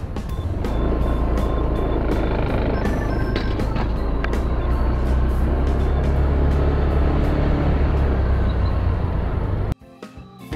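Loud, steady rumble of wind and road traffic picked up by the built-in microphone of a pair of spy-camera glasses while travelling along a road. It cuts off abruptly just before the end.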